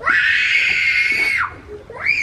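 A small child screaming: one loud, high-pitched, held wail lasting about a second and a half, dropping in pitch as it breaks off. It is the sound of an upset young child.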